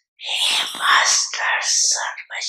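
Speech: a voice talking in short phrases after a brief pause.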